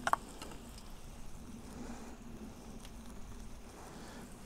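Faint sizzling and crackling from a wood-fired steel fire plate, with a few light ticks and a short click just at the start.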